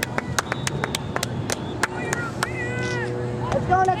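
Sideline sounds at a youth soccer game: scattered sharp clicks and taps, distant shouted calls from the field about two seconds in, and a steady low hum. Near the end a spectator close by starts shouting "Go, let's go."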